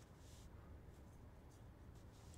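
Near silence, with the faint rustle of a stack of glossy trading cards being shuffled in the hands.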